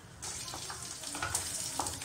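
Chopped onion hitting hot oil in a kadai and sizzling, the sizzle starting suddenly just after the start, with a few light knocks of a wooden spatula stirring it.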